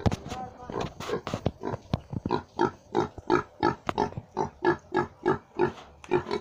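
A young pig grunting in short, evenly spaced grunts, about three a second, starting about two seconds in; a few scattered knocks come before them.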